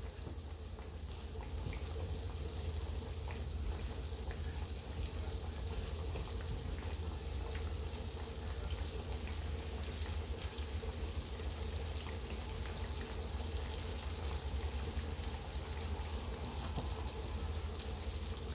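Flour-dredged boneless chicken thighs frying in hot oil in a skillet: a steady sizzle with many fine crackling pops, over a low steady hum.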